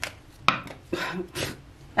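A stack of round cards being handled, giving several sharp clicks of card against card about half a second apart.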